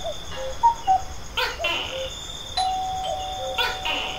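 Doorbell-like chimes sounding a falling two-note interval, the 'cuckoo' or 'ding-dong' call, several times over at different pitches, then a longer ringing note held through the second half. A few short sharp sounds fall in between, over a steady high trill.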